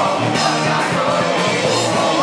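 Live punk rock band playing loudly with singing, the crowd pressed around the band shouting the words along.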